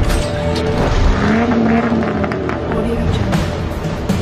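Background music mixed with a sports-car sound effect: an engine note that rises and falls in pitch.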